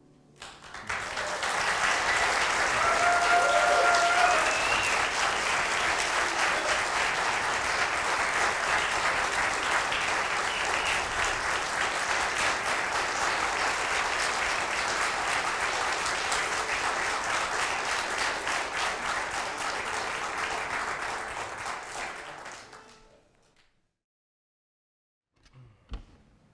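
Audience applauding, with a short pitched cheer from the crowd about three seconds in; the clapping dies away about 22 seconds in.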